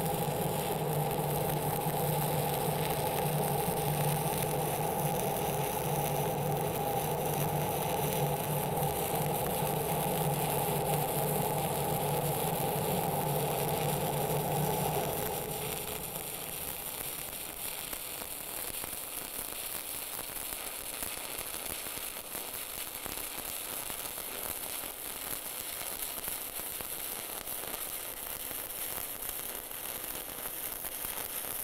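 Stick (SMAW) welding arc on steel pipe, crackling steadily as a 7018 rod is run at about 78 amps for the cap pass. A steady machine hum sits under the arc and stops about halfway through.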